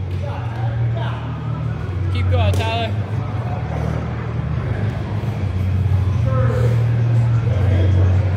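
Gym background: scattered voices over music, with a steady low hum throughout; one voice calls out about two and a half seconds in.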